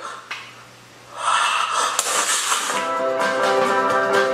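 A burst of loud noisy sound about a second in, followed from near the three-second mark by a short guitar jingle holding one chord.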